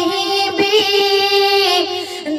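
A solo voice singing an Urdu naat, holding long drawn-out notes with a slight waver.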